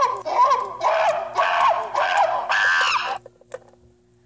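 A high-pitched voice making wordless vocal sounds in several bursts, stopping about three seconds in.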